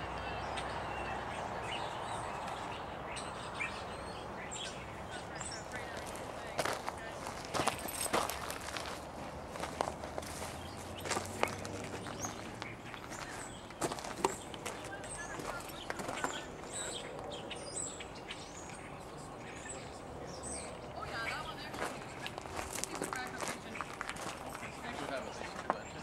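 Footsteps on gravel track ballast: irregular steps and scuffs starting about six seconds in.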